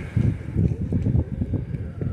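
Wind buffeting the microphone: an uneven low rumble that rises and falls through the pause.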